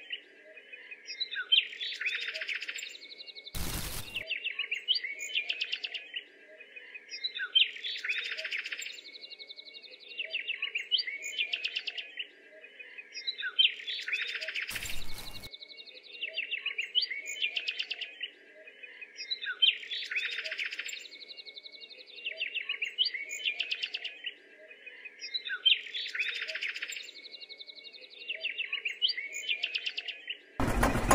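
Birds chirping and singing in a short pattern of calls that repeats almost identically about every six seconds, over a faint steady hum. Two short knocks, about four and fifteen seconds in.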